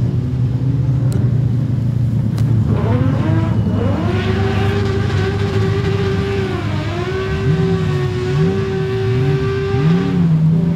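A modified sedan speedway car's engine revs up about three seconds in and is held at high revs as the car spins donuts with its rear wheels spinning, dipping briefly about two-thirds through. Other cars' engines idle underneath.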